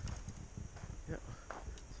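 Footsteps of someone walking along a dirt path, a run of irregular low thuds.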